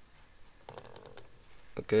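A few light, quick clicks at a computer, bunched from about a second in, followed at the very end by a short spoken word.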